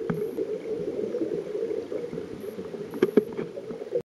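Muffled underwater noise from a camera under the sea: a steady rush of water, with a sharp click at the start and two more close together about three seconds in.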